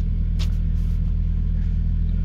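Steady low rumble of a car's cabin, with one short click about half a second in.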